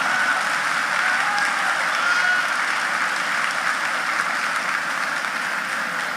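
Large audience applauding steadily, the clapping easing slightly near the end.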